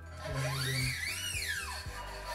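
A new wound low E guitar string being drawn through the bridge of an electric guitar, the metal squealing in one smooth glide that rises and then falls over about a second and a half, over steady background music.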